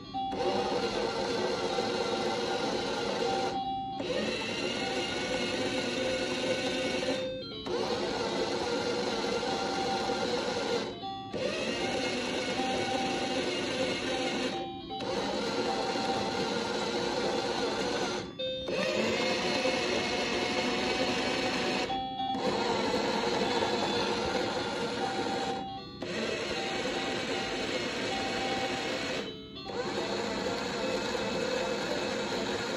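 Toy washing machine running: an electronic jingle of short beeping tones over a whirring sound, which breaks off briefly and starts again about every four seconds, like a looped cycle.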